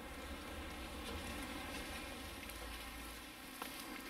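Quiet room tone: a faint, even rustling noise over a low hum that drops away shortly before the end, with a small click near the end.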